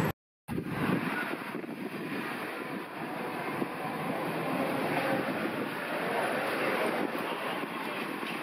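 Steady street ambience of traffic noise, starting about half a second in after a brief dropout.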